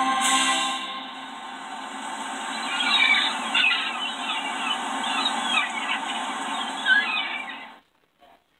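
Trailer soundtrack played through a TV speaker: music, joined from about three seconds in by a run of short, high, squeaky chirping calls. It all cuts off suddenly just before the end as the trailer finishes.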